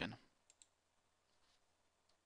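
A faint computer mouse click, a quick press and release about half a second in, selecting a menu option; otherwise near silence.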